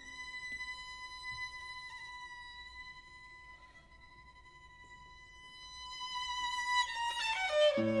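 Solo violin holding one long, soft high note that thins out and then swells. Near the end it breaks into a quick descending run, and a piano comes in with low notes just at the end.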